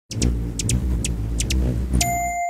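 A loud low rumble with a scatter of short, sharp high ticks over it, giving way right at the end to steady chime-like tones.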